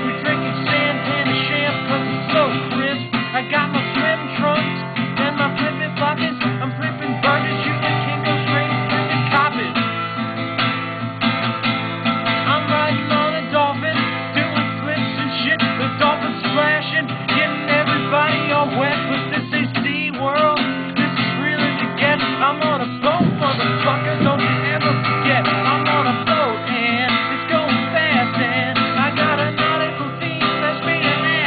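Acoustic guitar strummed steadily, with a man's voice singing over it.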